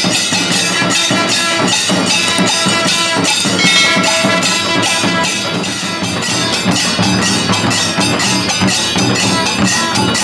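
Kailaya vathiyam, a Shaivite temple percussion ensemble: large stick-beaten drums and big brass hand cymbals played together in a fast, driving, unbroken rhythm, with the cymbals ringing bright over the drum strokes.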